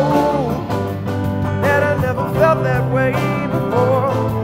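A rock band playing live: drum kit, electric guitar, bass and piano, with a melody line that bends in pitch over a steady low bass line.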